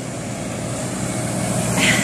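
Road traffic noise: a steady hiss of a vehicle passing on the street, growing slowly louder, with a faint steady engine hum.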